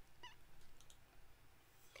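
Near silence: room tone, with a faint brief wavering sound and a few tiny ticks in the first second.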